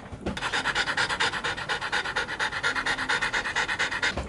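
French bulldog panting quickly and steadily, several breaths a second, starting about a quarter second in.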